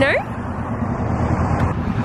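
Steady road traffic noise from a busy main road close by, with wind on the microphone.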